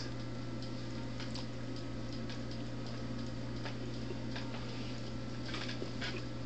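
A quiet, steady low hum with faint, irregularly spaced clicks.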